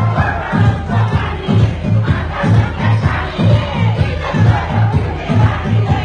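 Loud dance music with a heavy bass beat about twice a second, and the voices of a crowd shouting over it.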